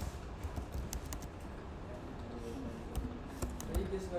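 Scattered light clicks of a computer keyboard and mouse.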